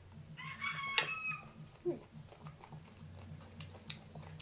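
A rooster crowing once in the background, a call of about a second that falls away at its end. A few faint clicks follow near the end.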